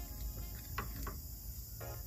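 Quiet room tone with a faint, steady high-pitched hiss, and two faint short sounds.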